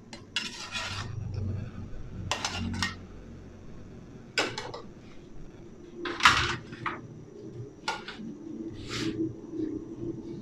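Dishes and metal kitchen utensils clinking and clattering in about six separate short bursts, the loudest about six seconds in, over a low steady hum.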